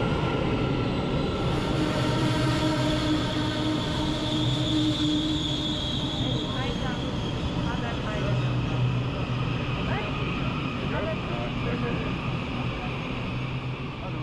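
Taiwan Railways electric commuter train pulling in alongside an underground platform and slowing to a stop, with the steady rumble of its cars and a high whine over the first half.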